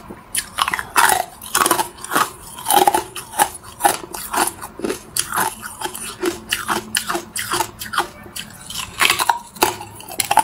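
Hard ice being bitten and chewed close to the microphone: a run of sharp, irregular crunches, roughly two a second.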